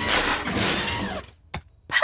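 Cartoon sound effect of a backhoe's working arm: a noisy motor whir about a second long that cuts off, followed by a couple of soft clicks.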